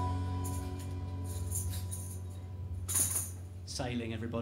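A live band's final chord fading out over a steady low amplifier hum, with a few faint high clicks and rattles in the first half; a brief louder burst about three seconds in, and a voice starts just before the end.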